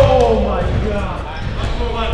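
A person's voice calls out briefly in the first half-second, over faint sharp taps of pickleballs bouncing or being hit around the court.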